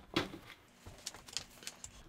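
A few light handling knocks and clicks: a cordless vacuum set down on top of a metal PC tower case, then small clicks as an anti-static wrist strap is handled.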